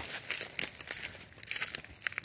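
Irregular rustling with scattered soft crackles and clicks.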